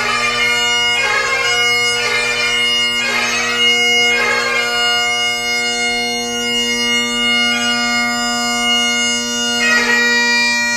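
Great Highland bagpipe playing piobaireachd: the steady drones sound under the chanter, which plays flurries of quick grace notes about once a second for the first few seconds, then long held notes.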